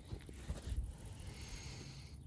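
Low, quiet rumble of a car heard from inside the cabin, with a few faint knocks and a faint hiss in the second half.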